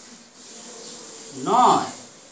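Whiteboard marker rubbing across a whiteboard as words are written. Near the end a short, louder voice sound cuts in.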